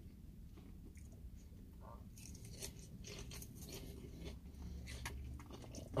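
Faint, irregular crunching of a person chewing a mouthful of crisp salad, sparse at first and thicker from about two seconds in, over a steady low hum.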